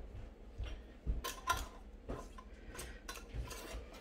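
Metal screw bands being turned finger-tight onto glass mason jars by hand: faint, irregular clicks and scrapes of the threads and metal on glass.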